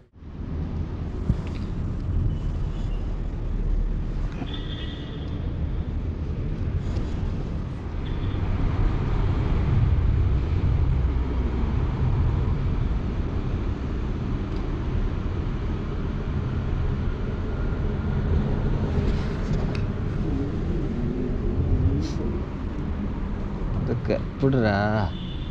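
Steady low rumble of road traffic crossing a bridge overhead, with faint voices in the background.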